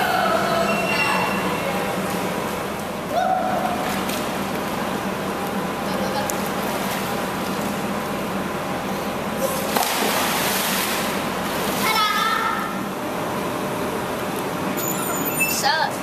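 Indoor pool hall: children's voices and short shouts over a steady wash of splashing water, with a louder splash of a body going into the water about ten seconds in.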